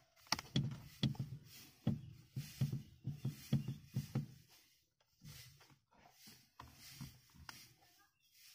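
Faint clicks and knocks of a spanner and hands working the clutch pedal's push rod and lock nut under the dashboard. There is a quick run of them in the first half, and fewer and fainter ones after.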